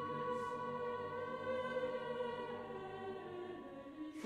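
Music: a sustained choir-like chord of steady held tones, slowly fading toward the end.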